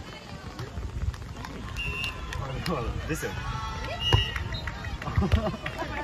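Beach volleyball players shouting and calling to each other during a rally, with a few sharp slaps of hands striking the ball.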